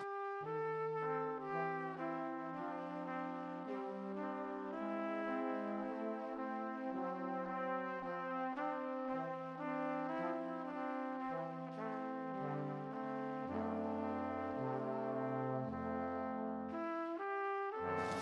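Brass music: several held notes sounding together in chords that change step by step. A lower bass part comes in during the last few seconds, and the music stops abruptly just before the end.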